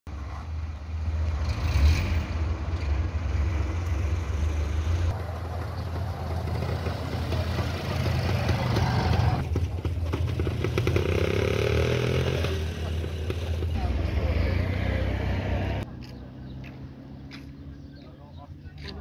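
Road vehicle driving, with a heavy low rumble and wind noise on the microphone and voices now and then. Near the end the rumble cuts off suddenly, leaving quieter outdoor sound with voices.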